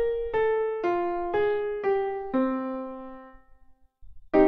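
Synthesized piano playback from MuseScore 3 notation software: two-note intervals struck about twice a second, the last one held and left to fade away, with a short silence near the end.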